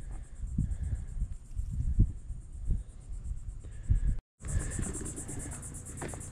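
Insects trilling in a steady high-pitched chorus, faint at first and louder after a brief cut about four seconds in. Low rumbling and a few soft thumps on the microphone sit underneath.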